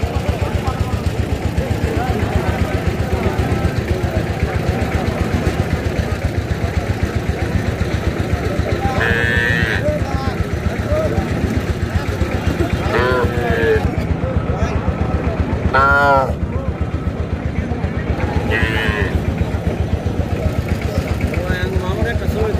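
An engine running steadily close by with a fast, even pulse, and voices calling out briefly over it several times, loudest a little past the middle.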